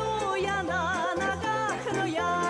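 Background music: a wavering melody with strong vibrato over a steady, repeating bass line.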